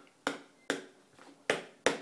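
A toddler eating: a run of short, sharp clicks, about two or three a second.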